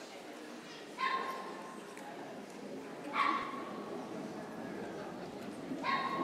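A small dog, most likely one of the Papillons in the ring, giving three short high-pitched yips spaced about two seconds apart, over the murmur of a crowd in a large hall.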